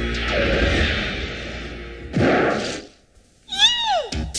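Soundtrack sound effects at a scene change: a noisy whoosh that swells and fades, then a second short whoosh sweeping down in pitch about two seconds in. After a brief moment of near silence, a pitched glide rises and falls, leading into dance music with a beat.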